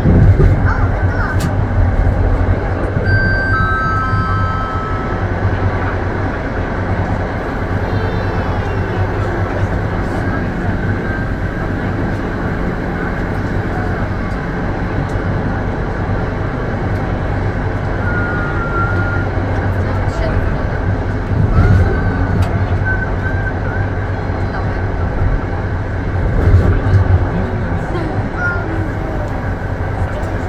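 Steady running rumble of an electric passenger train heard from on board as it rolls along the track. There are a few brief high-pitched squeals a few seconds in, and the rumble swells louder twice in the second half.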